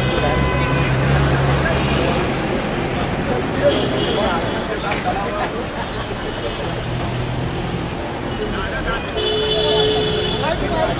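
Busy city street: continuous traffic noise with engines running and a babble of distant voices. A held tone, like a vehicle horn, sounds near the end.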